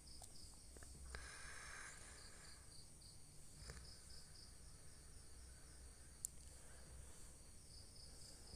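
Near silence: faint, steady high-pitched chirping in an even rhythm, with a soft rustle about a second in and a couple of faint clicks from the plastic toner box being handled.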